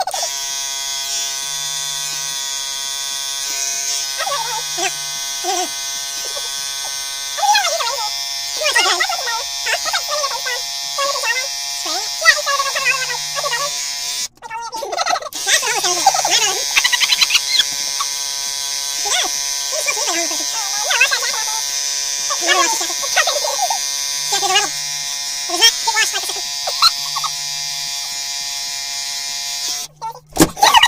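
Electric shaver running with a steady, even-pitched hum while a beard is shaved off, cutting out briefly about 14 seconds in. High, chipmunk-like sped-up voices chatter and laugh over it.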